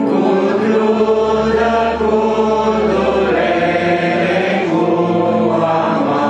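Two men singing a Romanian hymn together, accompanied by an electronic keyboard playing sustained chords.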